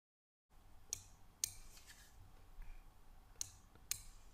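Four faint, sharp clicks of a computer mouse and keyboard while settings are entered, in two pairs about half a second apart: one pair about a second in and the other near the end, over a low background hum.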